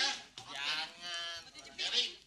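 A person's long vocal cry, held on one nearly level pitch for about a second.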